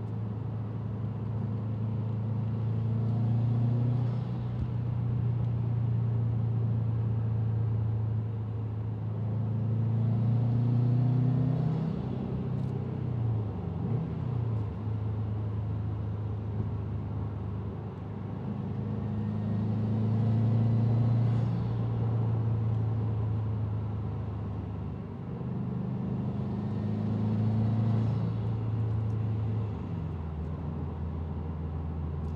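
A Subaru STI's turbocharged flat-four engine, fitted with an AEM cold air intake, running with a steady low hum. The engine swells and eases back about four times, with a brief shift in pitch near the middle.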